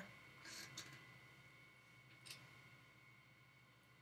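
Near silence: faint room tone, with one faint click a little past two seconds in.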